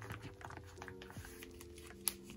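Faint light clicks and plastic rustles of photocards being slid out of and into clear nine-pocket binder sleeves, with soft background music holding a few low notes.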